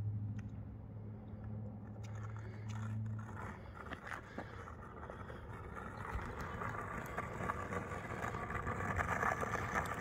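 Skateboard wheels rolling over rough asphalt, a gritty rumble with occasional small clicks that grows louder as the board comes closer. A steady low hum sits under the first few seconds.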